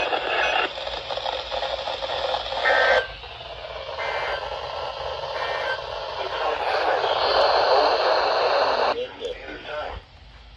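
Weather radio receivers hissing with static through their small speakers after the weekly test broadcast. The hiss is loud for about three seconds, drops suddenly, builds again and cuts off near the end.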